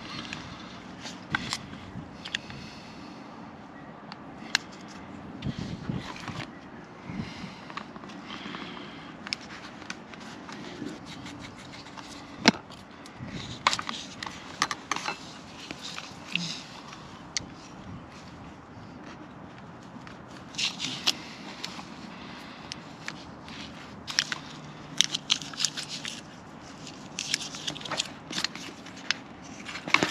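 Strips of paper-backed butyl tape being laid and pressed around a plastic RV water-fill plate: irregular crackling, scraping and clicking handling noises. A louder sharp click comes about twelve seconds in, and the noises cluster more densely in the second half.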